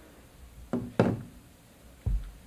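A Shake Weight being set down hard on a wooden tabletop: two knocks about a quarter second apart, the second louder.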